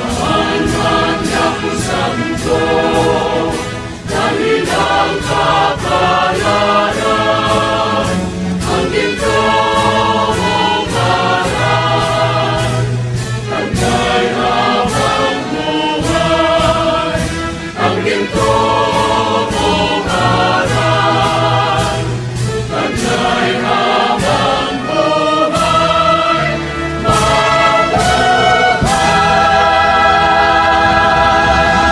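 Recorded choir singing a Tagalog hymn over instrumental accompaniment with a steady beat, ending on a long held chord on "Mabuhay!" near the end.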